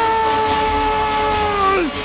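A man's long, drawn-out yell, held on one high pitch for nearly two seconds and sliding down as it cuts off, over a film score.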